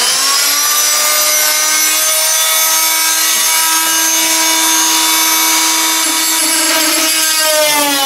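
Rockwell oscillating multi-tool running with a loud, steady, high-pitched whine. Near the end its pitch sags and wavers as the blade is pressed against the wood paneling to start cutting.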